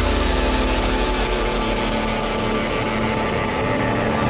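Big room house track in a breakdown with no kick drum: sustained synth chords over a rapidly pulsing low bass, with a high hissing noise sweep that thins out near the end.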